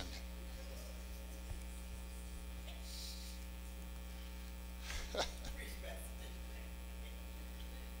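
Faint, steady electrical mains hum in the microphone and sound-system signal, with one brief faint sound about five seconds in.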